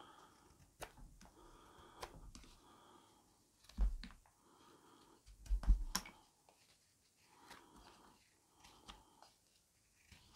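Carving knife cutting fresh green willow: faint, scattered slicing strokes and small clicks of the blade, with two louder dull knocks near the middle.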